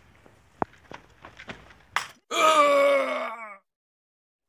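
A few short knocks, then a man's loud, pained groan lasting about a second and falling in pitch, which cuts off suddenly.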